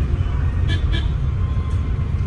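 Steady low rumble of road and engine noise inside a moving car's cabin, with a couple of brief faint higher sounds about a second in.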